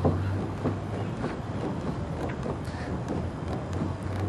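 Steady low hum in a car cabin, with faint scattered knocks and creaks as a suction-cup vacuum camera mount is tugged hard; the suction holds.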